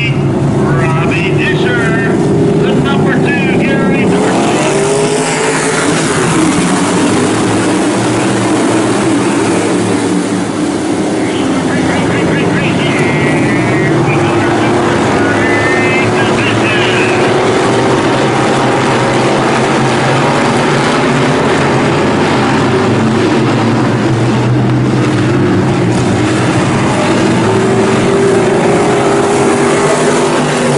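A field of dirt-track Super Street cars with V8 crate engines racing together, the roar rising sharply about four seconds in as the pack comes up to speed and then holding loud as they run around the track.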